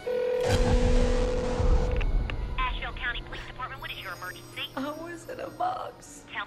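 Film sound design under title cards: a sudden low boom with a steady held tone for about two seconds, then rapid, high-pitched, unintelligible voice-like warbling.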